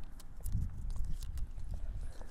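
Single-use tourniquet strip being handled and threaded through the slot of a second strip: a scatter of small, sharp clicks and ticks over a low rumble.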